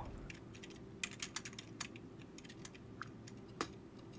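Faint computer keyboard clicking at an irregular pace, with one slightly louder click a little before the end: keys being pressed while playing a computer game.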